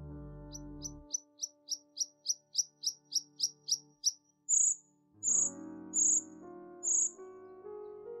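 A bird calling: a quick run of about a dozen short, high chirps, each dropping in pitch, then four louder, higher whistled notes. Soft sustained music fades out about a second in, and piano notes return about five seconds in.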